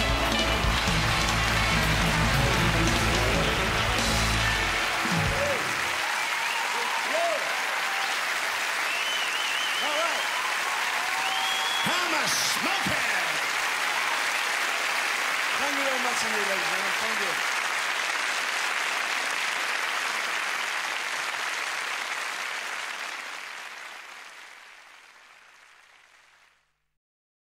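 Large theatre audience applauding and cheering, with scattered shouts and whistles, over the last held chord of a rock-and-roll band, which stops about six seconds in. The applause then goes on alone and fades out near the end.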